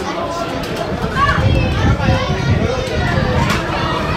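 Children's and spectators' voices calling out and shouting over one another at a youth football match, with no words standing out and one rising call about a second in.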